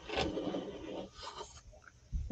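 Small wooden miniature room-box pieces sliding and scraping against each other for about a second, followed by a few faint light rubs.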